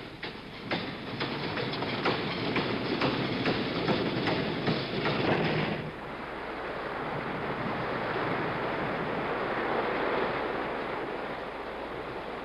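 A steady roar with many sharp rattling clicks for about six seconds, then an abrupt change to a smooth, steady rushing noise of surf and wind that swells slowly.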